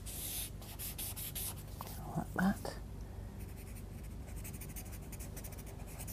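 Pastel pencil scratching and rubbing on black sketchbook paper in short strokes, with a quicker run of fine strokes near the end.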